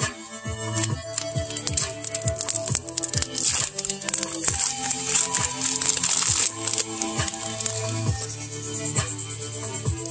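Background music, with a foil trading-card booster pack wrapper crinkling loudly as it is handled and torn open in the middle.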